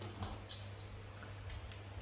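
A few faint, sharp clicks of hand saws being handled and set down, over a low steady hum.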